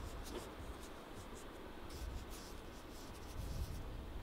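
A large bamboo-handled ink brush swishing across butcher paper in several short strokes, over a steady low rumble.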